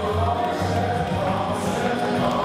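Ballroom dance music with choir-like singing, held notes over a steady bass line.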